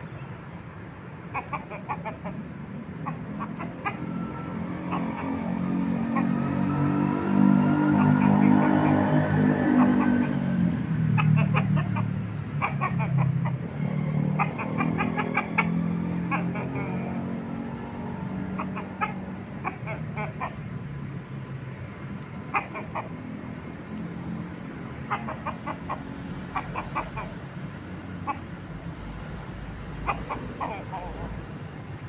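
Bangkok fighting rooster clucking in short calls throughout, while a passing motor vehicle's engine hum swells to its loudest about a third of the way in and then fades.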